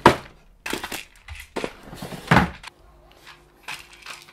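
Rummaging in a cluttered drawer: a string of knocks and clatter as objects are moved about, with a sharp knock at the start and another loud one about two seconds in.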